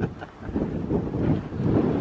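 Wind buffeting the microphone: a low, uneven, gusting noise that rises and dips about a second in.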